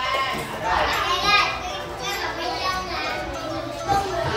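A group of young children's high voices talking and calling out over one another in a classroom.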